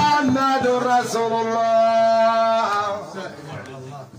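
Men's voices chanting a Sufi ʿimara dhikr together, with steady beats about three a second that stop after the first half second. The chant ends on one long held note about two and a half seconds in, followed by low murmured talk.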